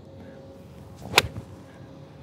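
Golf iron swung through and striking a ball off turf: a short swish, then one crisp click a little past a second in. It is a well-struck shot.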